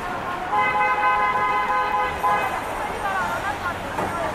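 A car horn honks in one long, steady blast lasting about two seconds, starting about half a second in, over street traffic.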